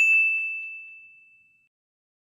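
A single clear notification-bell ding sound effect, one bright tone that fades out over about a second and a half.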